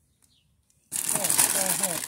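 About a second of near silence, then a sudden loud, close rustling noise, with a woman's voice faint beneath it.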